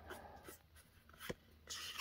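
Pokémon trading cards handled in the hands: faint rustling as cards slide across the stack, a sharp tick just past the middle, and a short sliding hiss near the end.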